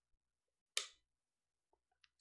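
Near silence, broken once about a second in by a short, soft breathy noise from a person at the microphone.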